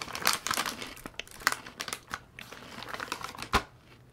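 Crinkling and rustling of a plastic snack bag as a hand digs through small crunchy rice-and-chia snack bites, in irregular crackly bursts, with one sharp click near the end.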